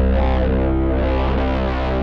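Roland FA-06 synthesizer workstation being played: a held deep bass note under a sustained chord.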